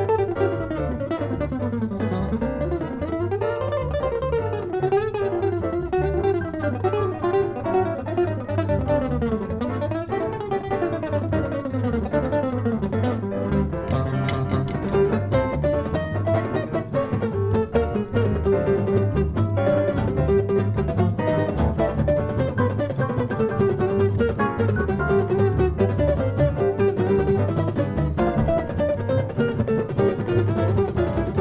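Jazz trio of archtop guitar, piano and upright bass playing an instrumental passage: quick, winding melodic runs over a steady bass line, with sharper, crisper note attacks from about halfway through.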